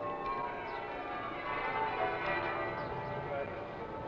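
Cathedral bells ringing a peal, many bells struck in quick succession so that their tones overlap into a continuous ringing.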